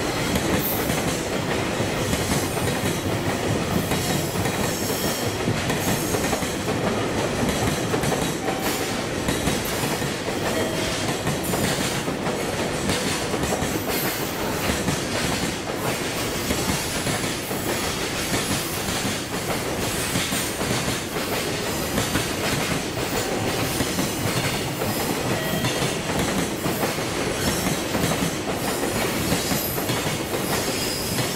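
Freight train of container flatcars rolling steadily past on the rails: continuous wheel-and-rail rumble with rhythmic clickety-clack as the wheels cross rail joints, and a brief thin wheel squeal now and then.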